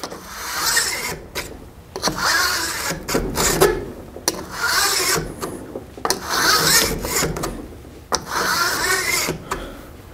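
File in an Oregon guide bar rail dresser rasping along the top rails of a steel chainsaw guide bar in about six strokes of roughly a second each, squaring off the worn top of the rails.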